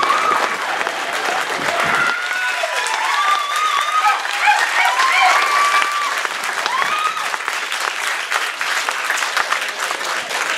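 Audience applauding, with scattered voices calling out over the clapping during the first several seconds.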